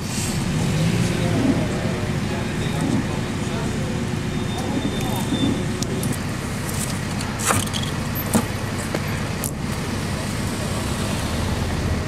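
A vehicle engine running steadily in the street, with people's voices talking indistinctly in the background and a few sharp clicks in the second half.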